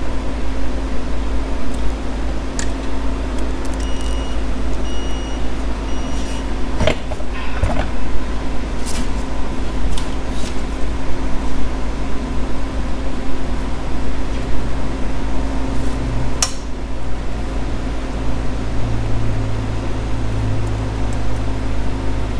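Hat heat press timer beeping a few times as its 10-second countdown ends, followed by sharp clicks and knocks as the press is opened and the hat handled, over a steady mechanical hum.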